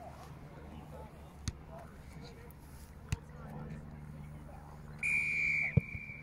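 Referee's whistle blown once near the end, a single shrill steady blast lasting under a second before trailing off, over faint field noise with a few sharp knocks.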